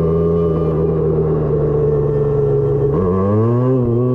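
Husqvarna motorcycle engine running at a steady speed while riding, then revving up about three seconds in as the bike accelerates, easing off slightly near the end.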